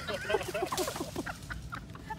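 Rapid, high-pitched laughter and yelps from people, a quick string of short shrieky bursts.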